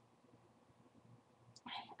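Near silence: quiet room tone, with a woman starting to speak near the end.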